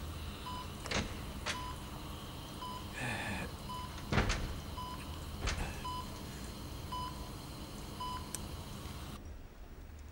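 Hospital patient monitor beeping a short tone about once a second, in step with the heartbeat; the beeping stops near the end. A man sighs about three seconds in, and a few soft clicks fall in between.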